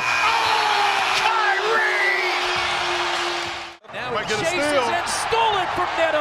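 Basketball arena end-of-period horn sounding through about the first second over a cheering crowd, after a shot at the buzzer. The crowd noise cuts off suddenly near four seconds in and another arena's crowd noise takes over.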